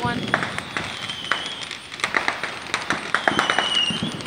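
Fireworks going off: a low report at the start, then a rapid, irregular run of sharp pops and crackles, with a thin high whistle near the end.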